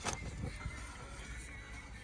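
Music playing quietly from the car's radio, heard inside the cabin, with a single click just after the start.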